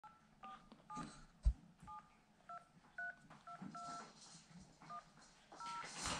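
Phone keypad dialling tones: about a dozen short two-tone beeps at uneven intervals as a phone number is keyed in. One low thump comes about one and a half seconds in.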